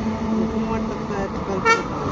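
A car, a Hyundai hatchback, driving past on the road, with one short horn beep near the end.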